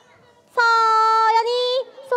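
A high voice holding one long sung or drawn-out note for a little over a second, dipping slightly in pitch at the end.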